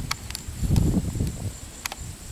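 Handling noise from a handheld camcorder being moved: a low rumble that comes and goes, with a few light clicks and a faint steady high whine.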